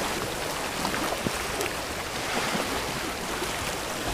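Steady wash of sea water and wind noise, with one faint click about a second in.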